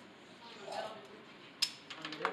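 Hand gas soldering torch being lit: a sharp click about one and a half seconds in, then a few quicker clicks near the end, in an otherwise quiet room.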